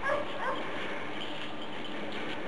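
Belgian Tervueren shepherd dog giving two short, high barks about half a second apart near the start, at a snow hideout during avalanche search training, as an avalanche dog does to mark a buried find.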